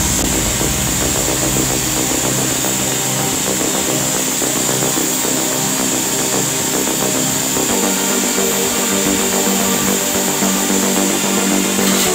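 Electric impact drill running steadily while held against a bicycle's rear hub, with electronic background music over it.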